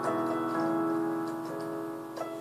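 Electronic keyboard with a piano voice playing held chords with a melody above them, struck at the start and again about half a second in, then fading toward the end.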